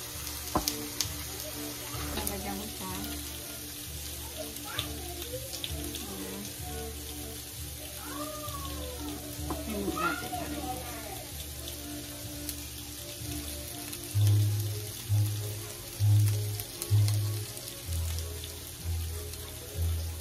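Ribs sizzling on a hot electric contact grill, a steady frying hiss. Background music plays along with it, its low bass notes loudest in the last few seconds.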